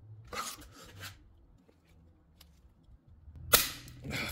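A tight transmission drain plug breaking loose under a 6 mm Allen key with a single sharp crack about three and a half seconds in.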